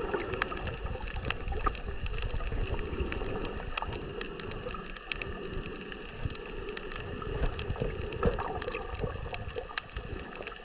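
Underwater sound picked up by a submerged camera: a muffled rush of moving water with a low rumble, dotted throughout with scattered sharp clicks and crackles.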